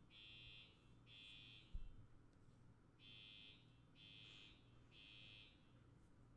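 Faint electronic alarm beeping in threes: three high beeps about a second apart, a pause, then three more. This is the temporal-three pattern of a smoke or fire alarm sounding. A single low thump comes a little under two seconds in.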